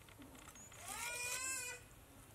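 A single animal cry, about a second long, rising then easing down slightly in pitch, about halfway through.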